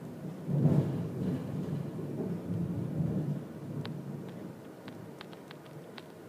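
Stylus writing on an iPad screen: a low rubbing rumble as the words are written, fading after a few seconds, then a string of light ticks of the stylus on the glass near the end.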